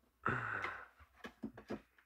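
A soft, breathy exhale of admiration, like a sigh, followed by a few faint short clicks.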